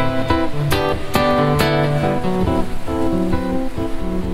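Solo classical guitar music: plucked chords and notes struck about twice a second.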